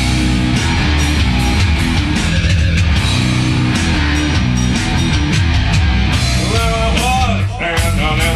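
A rock band playing live: electric guitar and an electronic drum kit playing an instrumental passage, loud and steady, with a brief dip in loudness near the end.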